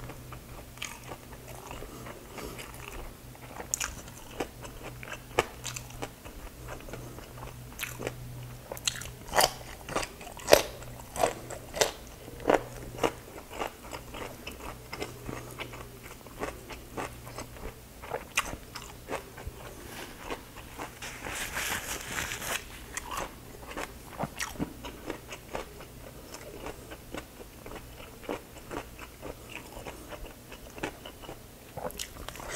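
Close-miked mouth chewing crispy fried pork, with many sharp crunches that come thickest and loudest about a third of the way in.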